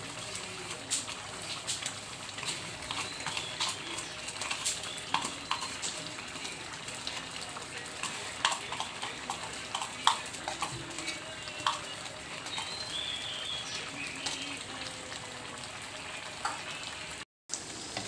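Thick coconut-milk and chili rendang gravy simmering and sizzling in a wok, with a steady bubbling hiss and frequent short pops. The sound cuts out for a moment near the end.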